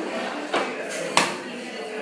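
Two sharp clicks from the Electrolux UltraSilencer Zen vacuum cleaner being handled, about half a second and just over a second in, the second one louder.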